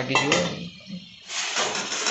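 A steel spoon stirring and scraping in a steel kadai of watery masala gravy, which sizzles, starting a little over a second in. A short bit of voice is heard at the very start.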